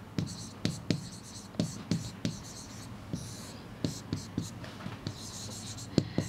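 A marker writing on a board: a string of short taps and scratchy strokes as a word is written out, then underlined, with an arrow drawn beneath it.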